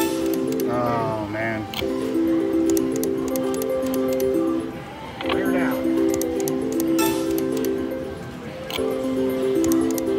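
Everi Bull Rush video slot machine playing its reel-spin melody over three back-to-back spins. The tune breaks off briefly and starts again with each new spin, with light clicks as the reels stop.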